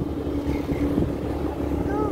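Motorcycle engine running at a steady cruise with a constant drone, under the low rumble of wind on the microphone.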